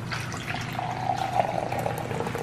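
Coffee poured from a stainless steel carafe into a ceramic mug, the stream starting about half a second in and going on steadily with a hollow filling tone.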